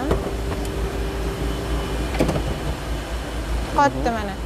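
Sliding side door of a JAC M4 van unlatched with a click and rolled open, ending in a clunk about two seconds in as it reaches its open stop. A steady hum runs underneath.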